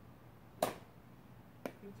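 A child's golf club striking a practice golf ball in a single sharp click about half a second in, followed by a fainter click about a second later.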